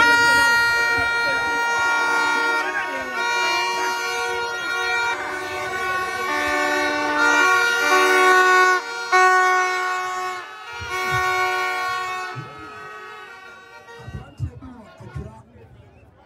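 Several plastic stadium horns (vuvuzela-type) blown together in a crowd. Long overlapping notes change pitch every second or so, then stop about two seconds before the end, leaving crowd voices.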